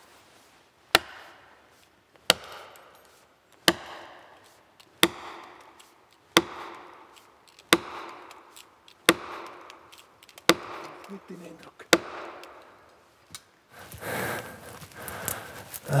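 An axe hammering plastic felling wedges into the back cut of a back-leaning spruce: about ten sharp knocks, one every second and a half or so, each with a short ring, the last one lighter. The wedges are being driven to lift the tree against its lean toward the felling direction.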